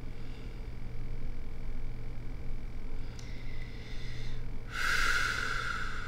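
A quiet room with a steady low hum, and near the end one breath of about a second from the woman sitting in the chair.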